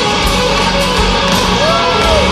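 Live rock band playing an instrumental passage led by an electric guitar solo on a sunburst Stratocaster-style guitar, with bent notes rising and falling near the end.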